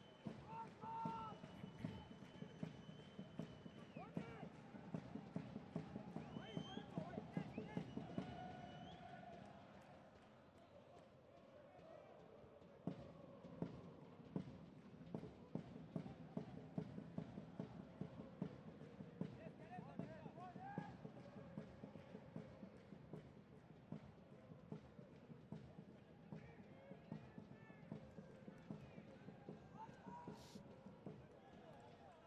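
Faint football-stadium sound during play: shouts and calls from the pitch and stands over a run of rapid knocks, which break off for a couple of seconds about ten seconds in.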